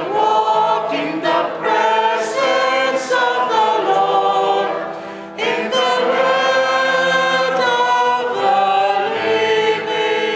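Church choir singing a responsorial psalm over steady held keyboard chords; the singing breaks off briefly about five seconds in, then carries on.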